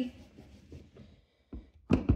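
Faint handling sounds, then two soft taps near the end as a photopolymer stamp on a clear acrylic block is inked on an ink pad.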